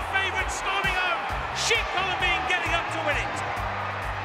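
Race commentary voice over background music with a steady bass beat.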